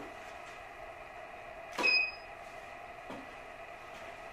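A camera shutter releasing as the studio flash fires: a single sharp click about two seconds in with a short high electronic beep, then a fainter click about a second later, over a steady faint hum.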